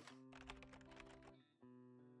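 Very quiet logo-intro music: held plucked-string notes with light rapid clicks over them, cutting out briefly about one and a half seconds in.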